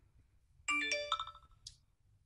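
A short electronic ringtone-like chime: a quick run of several bright tones at different pitches lasting under a second, followed by a brief high hiss.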